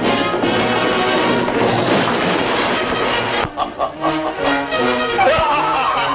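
Orchestral film score with brass, busy and loud for about the first half, then breaking into short, separate notes with a sharp hit near the end.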